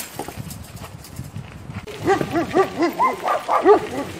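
A dog barking about eight times in quick succession during the second half, each bark a short yelp that rises and falls in pitch.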